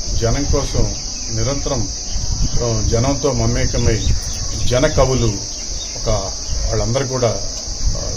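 A man talking in Telugu over a steady, high-pitched drone of insects.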